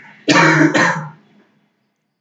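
Someone clearing their throat loudly in two quick rough bursts, starting a quarter second in and lasting about a second.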